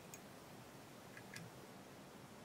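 Near silence with three faint light clicks, one just after the start and two close together past the middle, as a whip-finish tool works the thread at the head of a fly in a fly-tying vise.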